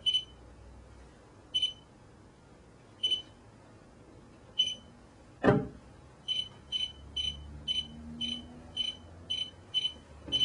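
Short, high electronic beeps, one about every second and a half, then a knock as a phone is set down on the wooden board about five and a half seconds in. After that, the beeps come quicker, nearly three a second, while the phone sits beside the Bluetooth device.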